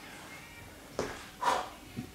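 Two short, forceful breaths out from a man straining through a resistance-band press, the second about half a second after the first and the stronger of the two.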